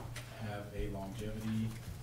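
A man speaking in a low voice with indistinct words, after a brief click at the very start.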